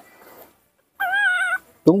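A baby macaque gives one short, high, wavering cry about a second in, an impatient begging call for its milk.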